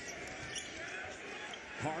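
Basketball game audio from courtside: steady arena crowd murmur with a basketball bouncing on the hardwood court during live play. A play-by-play commentator's voice comes in right at the end.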